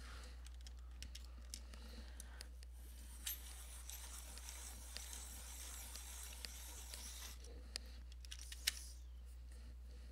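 Coloured pencils being sharpened in a pencil sharpener: a faint scraping grind from about two and a half seconds in until about seven seconds, with scattered small clicks and taps around it.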